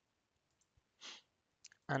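A short, quiet pause: one soft breath about a second in, then a few faint clicks just before speech resumes.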